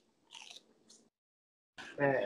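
Near silence, with a few faint, brief noises in the first second.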